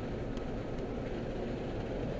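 Steady low road and engine noise heard inside the cabin of a moving car.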